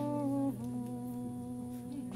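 A woman humming long held notes, the pitch stepping down about half a second in and then slowly fading.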